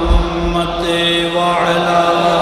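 A man's voice chanting an Islamic devotional recitation in long, held notes that shift slowly in pitch.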